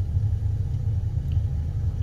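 Steady low rumble of a car heard from inside its cabin, with no other distinct sound.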